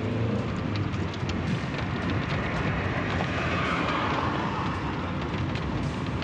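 Road and engine noise from a moving vehicle, recorded from the vehicle itself: a steady low rumble under a rushing noise, with a few faint clicks.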